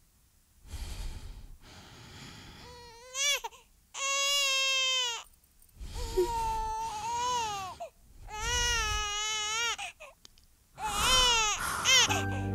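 An infant crying in a series of long, wavering wails, starting about three seconds in.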